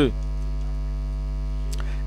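Steady electrical mains hum from the microphone and sound system, a low buzz with a ladder of overtones, during a pause in the speech; a faint click shortly before the end.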